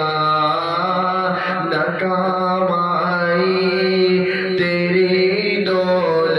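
A man singing an Urdu naat in long, held melodic lines that bend slowly in pitch.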